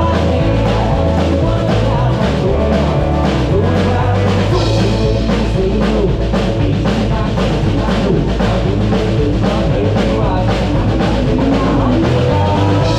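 Live band playing a 90s country song: electric guitar, electric bass and drum kit keeping a steady beat.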